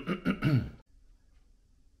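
A man clearing his throat, a short vocal sound lasting under a second, followed by quiet room tone.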